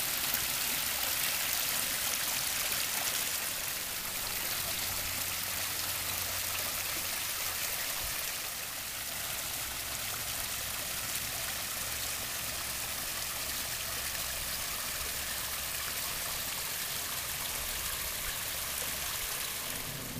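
Water running steadily over the small stone spillways of a koi pond's rock-lined stream and waterfalls, a continuous splashing trickle.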